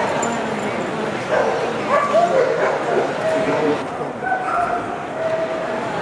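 A dog whining and yipping: a string of short, high, held whines at shifting pitches, over steady crowd chatter.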